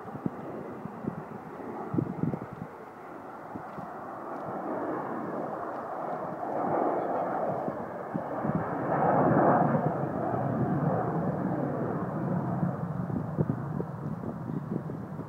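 Jet noise from an Avro Vulcan's four Rolls-Royce Olympus turbojets as it flies past, building steadily to its loudest about nine seconds in and easing a little after, with gusts of wind on the microphone.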